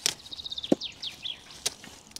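Brussels sprouts being snapped off the stalk by hand: a few sharp, crisp snaps.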